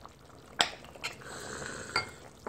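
Metal ladle clinking against a stainless steel pot and ceramic bowl a few times as spicy fish stew is ladled out, with broth pouring into the bowl during the second half.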